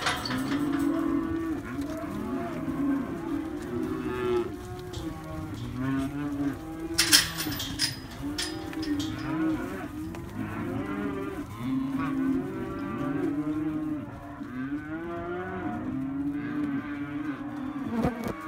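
A mob of young cattle mooing and bellowing, many calls overlapping with no break. There is a sharp knock about seven seconds in.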